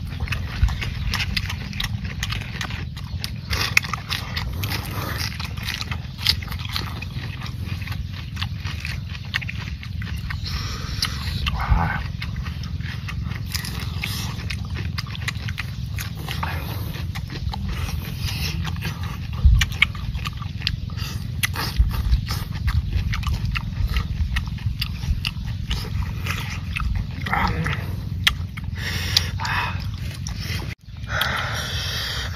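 Close-miked eating sounds: wet chewing and mouth noises of people eating raw shrimp salad by hand, with many small clicks, over a steady low rumble.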